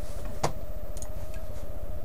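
One sharp click about half a second in and a faint tick about a second in, from working a computer's mouse and keys, over a steady low electrical hum.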